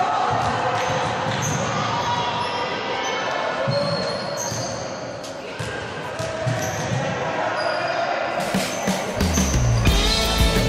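A basketball bouncing on a hardwood court, with voices in the hall; music comes in near the end.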